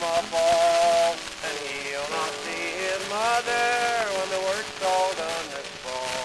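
The closing bars of a 1925 acoustic 78 rpm country record with guitar: a held melody line with sliding notes plays on after the last sung words. Steady record surface hiss and faint crackle sit underneath.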